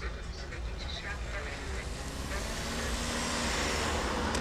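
Street traffic: a steady low rumble, with a passing car growing louder through the second half.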